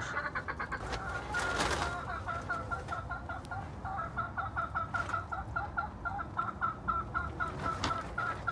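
Broody hen sitting on eggs, clucking rapidly and steadily, about five clucks a second. A brief rustle about one and a half seconds in.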